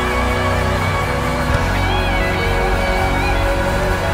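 A live worship band plays loud, driving rock music led by electric guitars over a steady heavy bass, with a congregation shouting and cheering underneath.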